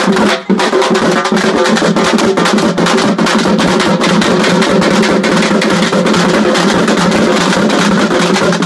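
Drums beaten loudly in a fast, dense rhythm, with strokes following one another too closely to count.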